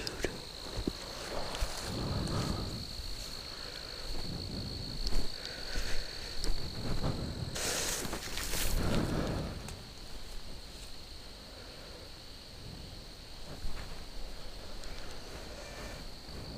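Footsteps shuffling through dry leaf litter on a forest floor, with a louder rustle about halfway through, over a steady high-pitched insect trill.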